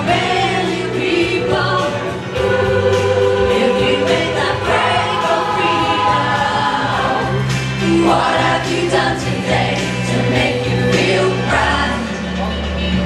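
Large mixed choir of men's and women's voices singing a pop song together.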